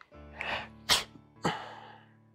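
Three sharp bursts of breath through a man's nose, the middle one loudest and sudden, over soft background music with long held notes.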